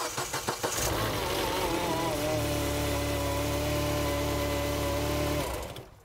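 Mini Cooper S (R56) engine cranked by the starter, catching within about a second and settling to a steady idle with a steady whine over it. It shuts off abruptly about five and a half seconds in.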